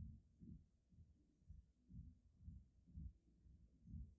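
Near silence with a faint, low, soft pulse repeating about twice a second.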